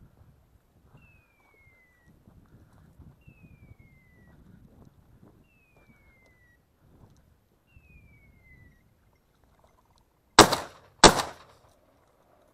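Two shotgun shots in quick succession, well under a second apart, near the end. Before them come faint rustling in brush and a thin falling whistle repeated about every one and a half seconds.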